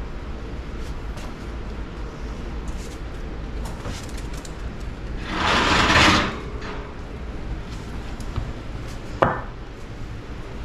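Oven door and rack being pulled open, a rushing, scraping burst of metal on metal about five to six seconds in, then a single sharp knock near the end as a glass baking dish is set down on a wooden board, over a steady low hum.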